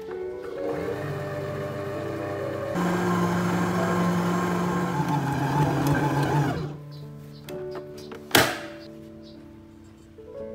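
Mito MX 100 stand mixer motor running with its dough hook kneading bread dough. It grows louder about three seconds in and stops about seven seconds in, and a single sharp knock follows.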